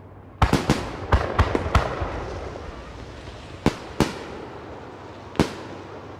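Fireworks going off: a rapid string of about seven sharp bangs in the first couple of seconds, then three more bangs spaced out after it, each with a short echoing tail.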